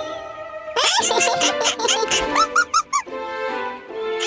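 Cartoon soundtrack: playful music with squeaky comic sound effects, quick rising glides about a second in and a run of short squeaks a little before the end.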